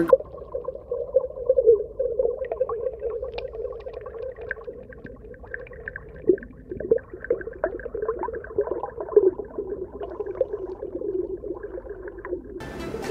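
Underwater ambience picked up by a camera under water: a muffled, wavering low drone with scattered clicks and crackles.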